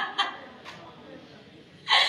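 A woman crying: short sobbing catches at the start, a quiet pause with a faint gasp, then loud wailing starts again near the end.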